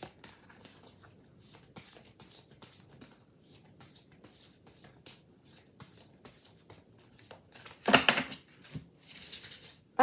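A deck of oracle cards being shuffled by hand: a steady run of light card-on-card clicks and swishes, with one louder noise about eight seconds in followed by a brief stretch of swishing.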